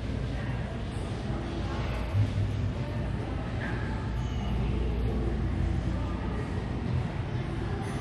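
Steady low rumble of room noise, with faint indistinct sounds above it.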